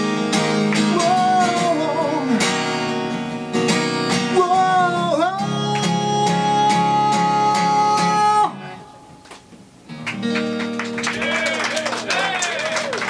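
A man singing to acoustic guitar strumming; he holds a long final note, and the music stops abruptly about eight and a half seconds in. After a short quiet gap, guitar and voices come back near the end.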